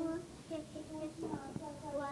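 A young girl singing a simple children's song, a string of short sung notes.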